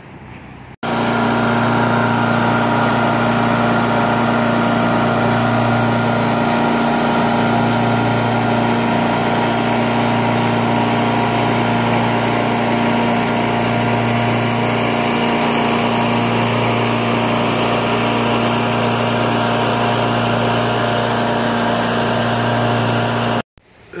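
Lawn mower engine running at a steady speed while cutting grass, starting abruptly about a second in and cutting off just before the end.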